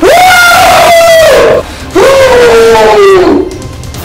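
A man shouting at the top of his voice: two long drawn-out yells, the second sliding down in pitch.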